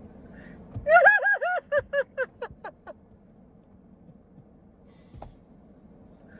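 A man laughing hard: a run of about eight quick pitched 'ha' pulses starting about a second in and fading out over two seconds. The rest is quiet apart from a single faint click near the end.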